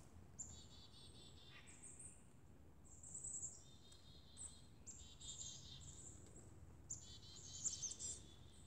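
Faint high-pitched chirping and short pulsed trills from small wild animals, coming in brief bouts about every second.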